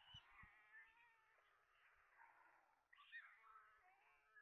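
White stork chicks begging for food as an adult feeds them: several high, wavering calls overlapping, with a louder cluster about three seconds in. A few soft low thumps come in the first half second.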